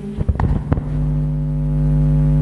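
A few knocks and rubs in the first second, then a steady, low held note from the karaoke backing track.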